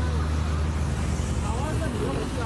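Street recording: a steady low motor rumble of traffic, with the faint, muffled voices of a man and a young boy arguing over it.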